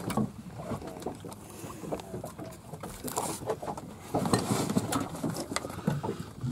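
Water slapping against the hull of a small fishing boat, with scattered knocks and clicks from gear and fish being handled on deck.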